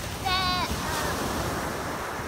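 Ocean surf washing onto the beach, a steady rushing wash with wind rumbling on the microphone. A girl's voice is heard briefly near the start.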